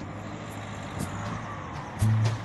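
Street traffic: a car passing close by, its engine running with a steady low hum over road noise.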